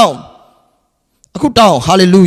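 A man's voice through a handheld microphone: a word trailing off at the start, about a second of silence, then another drawn-out word.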